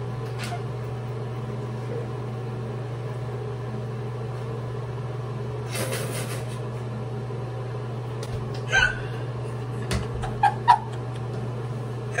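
A steady low hum, with a brief rush of noise about six seconds in. Near the end come a few short, sharp vocal sounds, like hiccups or stifled laughs.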